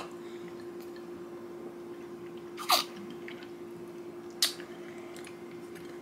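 Quiet sipping of bubble tea through straws and chewing of tapioca pearls over a steady low hum, with a short sound falling in pitch about two and a half seconds in and a sharp click about four and a half seconds in.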